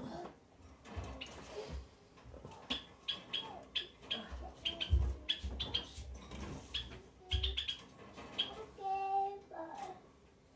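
Low thuds and rustling of bedding as a person climbs off a bed and moves about, mixed with many short high chirps. There is a brief vocal sound near the end.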